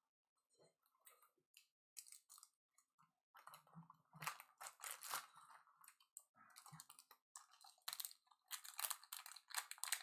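Faint crinkling and clicking of foil trading-card pack wrappers being handled, in short scattered bursts that come more often in the second half.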